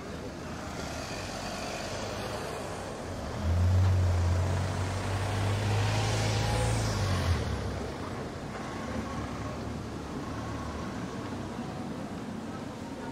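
City street traffic, with a motor vehicle passing close by. A deep, steady engine drone starts about three seconds in, swells with a rush of noise, and cuts off after about four seconds.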